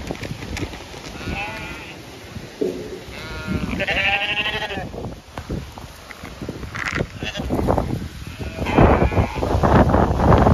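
Zwartbles sheep bleating several times, in wavering calls, the longest and loudest about four seconds in. Near the end, wind buffets the microphone with a loud rumble.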